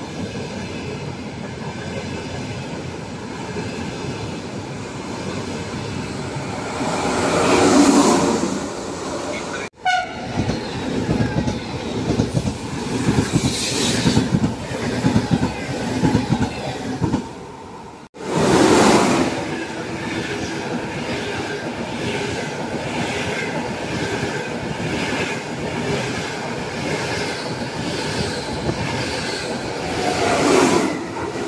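High-speed electric trains (Trenitalia and Italo) passing through a station at speed: a steady rush of wheels and air swells loudly as the cars go by. The wheels clack over rail joints at about two beats a second. Two sudden cuts join three separate passes.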